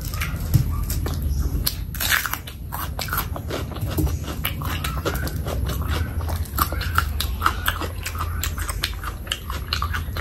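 Close-miked chewing of a mouthful of curry and rice, with many quick wet clicks and smacks from the mouth. A steady low hum runs underneath.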